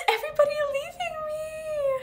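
A woman's drawn-out, high-pitched whine with no words, breaking twice in the first second and then held while slowly falling in pitch.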